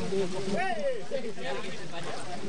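Shallow river water running over rocks, a steady rushing hiss, with a person's voice calling out once about half a second in and fainter voices after.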